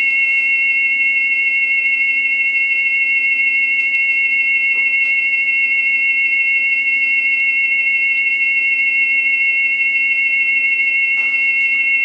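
Two steady high test tones a little apart in pitch, played from a test record's arm–cartridge resonance track by a Grado Reference Platinum cartridge on a Rega RB300 tonearm, with a slight warble. This is the 7 Hz band of the test, just below the arm–cartridge resonance, which lies around 8 Hz.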